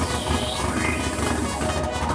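Electronic dance music with a heavy, steady bass and synth sweeps that rise and fall.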